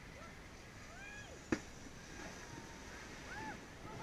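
Faint distant voices calling out in short rising-and-falling shouts, with a single sharp click about one and a half seconds in, over a quiet steady background.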